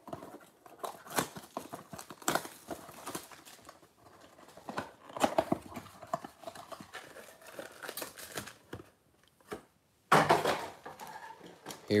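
A cardboard trading-card blaster box being torn open by hand: short tearing, rustling and crinkling of cardboard and foil card packs. About ten seconds in there is a louder rustle as the packs come out onto the table.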